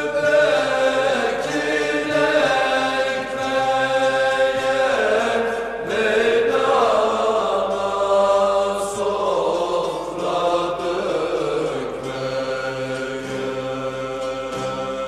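Turkish folk song (türkü): voices singing a long, ornamented melody in held notes with pitch glides, accompanied by a bağlama (saz) ensemble.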